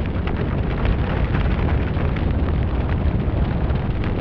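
Sound effect of a large fire burning: a loud, steady low rumble with many small crackles throughout.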